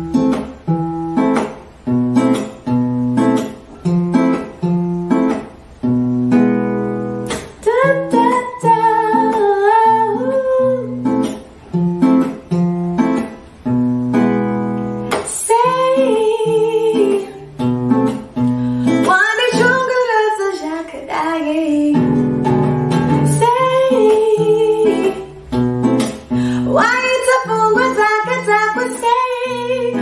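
A woman singing to her own strummed nylon-string classical guitar. The guitar plays alone, strummed about twice a second, for the first seven seconds or so before her voice comes in.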